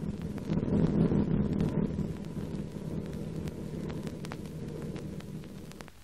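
Piston aircraft engines droning, swelling about a second in and then easing off. The sound comes from an old optical film soundtrack, with scattered faint clicks of crackle.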